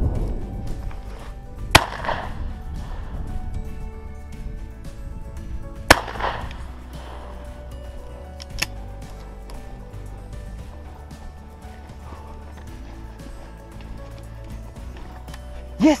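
Two 12-gauge shotgun shots from a Beretta over-and-under, about four seconds apart, each trailing off in an echo, fired at a running rabbit. Background music plays underneath.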